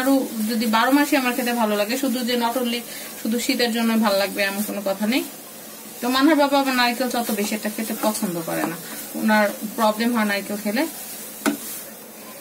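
A wooden spatula stirring and scraping grated coconut in a nonstick frying pan, under a woman talking for most of the time.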